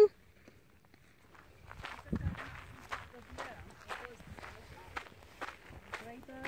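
Footsteps crunching on loose gravel, starting about two seconds in at roughly two steps a second.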